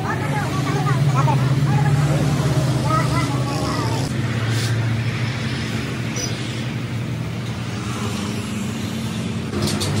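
Engine-driven sheet-metal cutting machine running with a steady low drone while it works through a steel plate, with a few sharp clicks near the end. Voices talk over the first four seconds.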